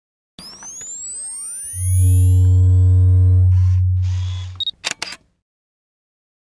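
Designed logo-intro sound: rising synthetic sweeps, then a loud, steady deep hum for about three seconds, then two short hissing bursts and a few sharp camera-shutter clicks near the end before it cuts to silence.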